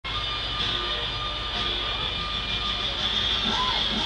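Steady drone of a tour boat's engines under way, with a constant high hiss over a low hum.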